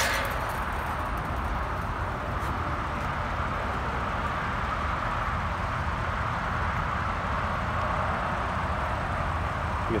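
Steady outdoor background noise: an even low rumble with a hiss, with no distinct events.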